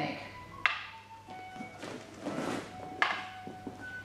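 Wooden practice swords (bokken) striking each other: a few sharp wooden knocks, each leaving a short hollow ring, with a brief rushing swish between them. The knocks are blade-on-blade impacts meant to unbalance the partner's sword.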